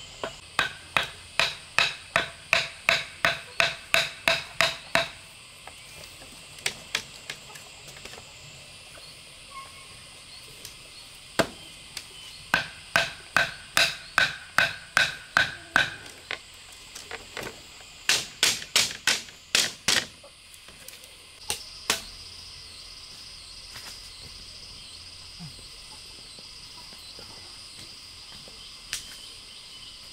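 Wooden club pounding split-bamboo fence stakes into the ground: three runs of sharp, ringing knocks, a little faster than three a second, with pauses between them, stopping about 22 seconds in. Crickets trill steadily throughout.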